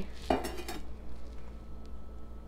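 A short clatter of metal kitchenware in the first second, then only a low steady hum.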